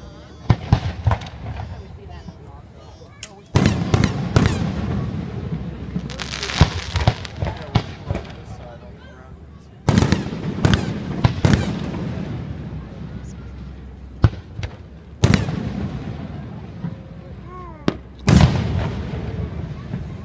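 Fireworks display: four heavy booms of aerial shells bursting several seconds apart, each trailing off slowly, with sharp single pops in between.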